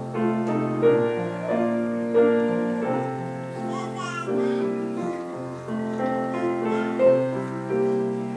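Piano playing a slow piece of sustained chords and melody notes, a new note struck about every second.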